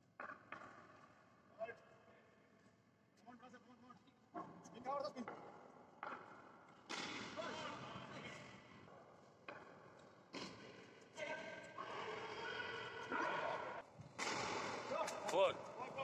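Men's voices shouting and calling out during a cricket game, ringing with a long echo off the bare steel walls of an empty cargo hold, with a few sharp knocks, the loudest about a second and a half in.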